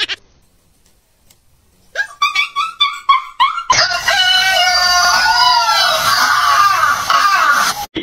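Rooster crowing: a loud, long call with rising and falling pitch in the second half, cutting off just before the end. It is preceded by a few short pitched sounds and a nearly quiet first two seconds.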